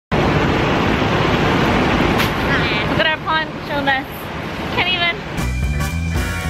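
Strong wind buffeting the microphone with a loud, rough rush, and a woman's high-pitched voice rising over it a few times. About five seconds in, the wind noise cuts off and upbeat background music begins.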